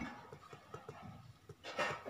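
Faint scratching and small taps of a pen writing on paper.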